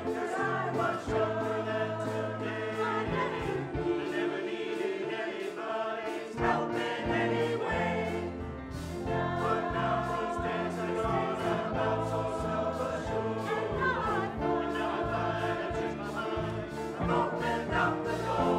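Mixed choir of adults and children singing a song with instrumental accompaniment, sustained sung chords over a steady bass line.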